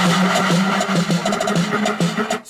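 Music played loud from a phone through a homemade TDA2003 amplifier into an old, restored loudspeaker, with a held bass note throughout. At this raised volume the overloaded old speaker starts to wheeze and distort.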